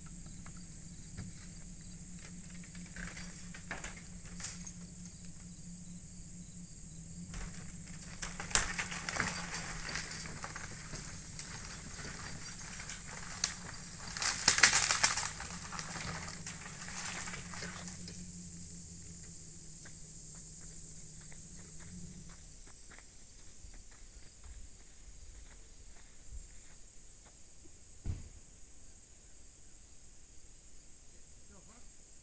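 A vehicle engine runs steadily while pulling on a strap hooked to an old house. Bursts of crackling and rustling come around the middle, and the engine stops about two-thirds of the way through. Crickets chirp steadily throughout.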